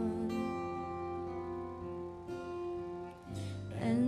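A worship band's guitars, acoustic and electric, holding a soft, steady chord in an instrumental gap between sung lines of a slow worship song. Singing starts up again right at the end.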